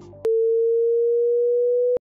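A steady electronic sine tone at one pitch, starting about a quarter second in after a faint tail of music and cutting off abruptly.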